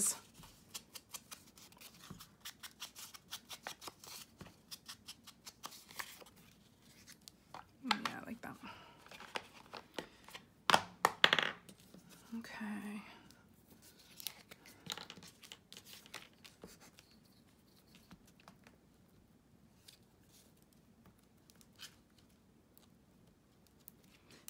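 Quick light taps of a foam ink blending tool dabbing ink onto the torn edges of a paper picture, several a second. About eight seconds in, louder rustling and ripping of paper takes over for a few seconds, then only a few faint taps.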